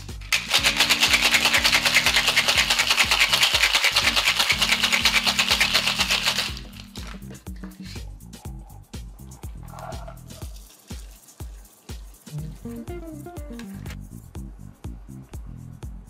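Ice rattling hard in a stainless steel tin-on-tin cocktail shaker, shaken fast and evenly for about six seconds and then stopping. Background music with a steady low line runs under it and carries on quietly after the shaking ends.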